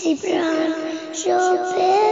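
A young girl singing an Islamic song (gojol), holding long steady notes, with a short break about a second in before she moves to a new note.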